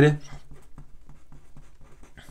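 Felt-tip pen writing on paper: a run of short, faint strokes as letters are written out.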